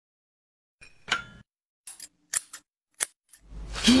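A series of short, sharp clicks, about six in all, from metal utensils or scissors handled against a hard surface. Near the end, a person makes a short vocal 'mm, oh'.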